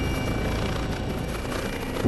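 Helicopter running: a steady, deep rush of rotor and turbine noise with no distinct changes.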